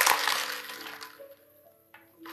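Faint steady low tones of background music under a hiss that fades away, dropping to near silence about a second in.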